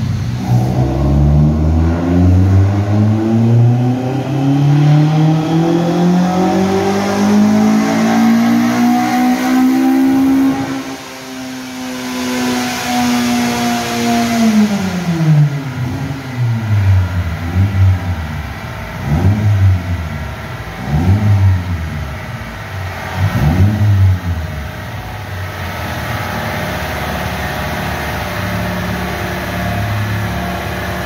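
Toyota Corolla AE111's four-cylinder engine on a chassis dyno power run: revs climb steadily under full load for about ten seconds, hold at the top for a few seconds, then drop. A handful of quick revs follow before it settles into idle.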